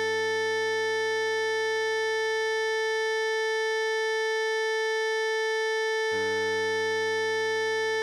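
One long held note from a synthesized alto saxophone, written F#5 and sounding A4, over a low sustained G minor chord accompaniment. The low chord drops out for about two seconds in the middle, then comes back.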